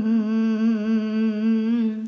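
Vocal music: a single voice holding one long hummed note with a slight waver, breaking off at the end.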